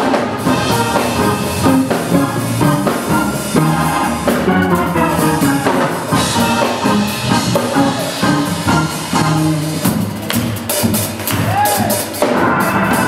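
Live instrumental gospel music from a trio: a hollow-body electric guitar, keyboards and a drum kit playing together, with cymbals.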